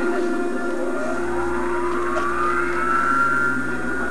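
Film soundtrack from a VHS tape playing on a television: a tone that rises steadily in pitch over about two and a half seconds, then levels off, over steady held tones and a low hum.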